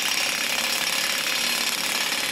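Metalworking power tool running steadily in a fabrication workshop, a dense, even noise with no pauses.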